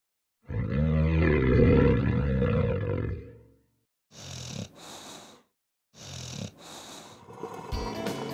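Cartoon snoring sound effect: one long, loud rasping snore of about three seconds, followed by two pairs of shorter wheezy, hissing breaths. Music comes in near the end.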